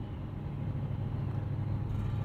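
Steady low hum and rumble of background room noise, with no clear events.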